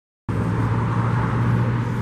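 Harley-Davidson Road Glide Special's V-twin engine, fitted with an RC exhaust, idling steadily. The sound is heard from about a quarter second in.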